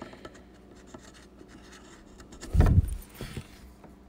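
Furniture touch-up marker rubbing faintly on a screw head as it is coloured black, with scattered small scratches, and one dull low thump a little past halfway.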